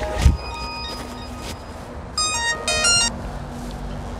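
Mobile phone ringtone playing a quick melodic run of high notes, over steady held musical tones, with a low thump near the start.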